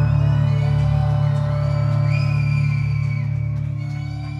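A live rock band's closing chord on guitars ringing out and slowly fading, with whoops from the audience rising over it.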